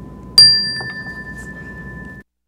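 A chime struck once about half a second in, its clear high tone ringing on and slowly fading, marking the start of a moment of silence.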